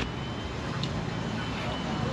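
Steady low rumble and outdoor background noise, with a faint high steady tone running through it.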